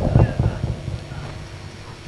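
A few hollow hand-drum strokes on a dholak in the first half-second, tailing off into a brief lull.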